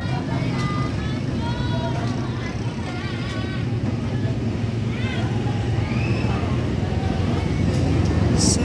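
Steady low rumble of a motor vehicle engine running, with faint voices in the background.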